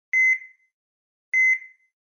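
Electronic beep sound effect: two short high beeps about 1.2 seconds apart, each a quick double tone that rings off, with dead silence between them.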